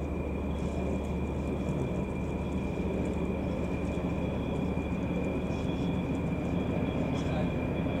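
Distant diesel locomotive running steadily: a constant low engine drone with a thin, steady high-pitched whine over it.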